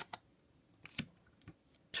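Yu-Gi-Oh trading cards being handled one by one, a card slid off the front of a hand-held stack and laid on a pile. Four or five short clicks of card against card, the loudest about a second in.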